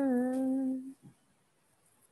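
A woman humming a drawn-out thoughtful 'mmm', held at a steady pitch, which stops about a second in.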